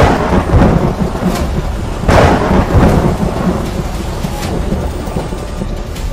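Two loud booming blasts about two seconds apart, each trailing off in a long rumble, with fainter cracks between: gunshot or explosion sound effects for the toy gun being fired.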